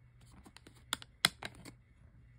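Plastic disc case being handled: a few short, sharp clicks and taps, the loudest about a second and a quarter in, as the disc and tray are worked in the case.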